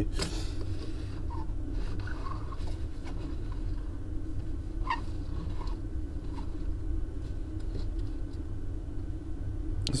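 A steady low hum, with a few faint light clicks and taps as a small diecast toy car on rubber tires is rolled and handled on a tabletop.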